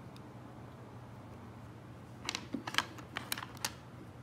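A quick run of about eight light clicks and taps over a second and a half, starting about two seconds in, as the plastic body of a Focus V Carta electronic dab rig is handled. A faint steady low hum lies underneath.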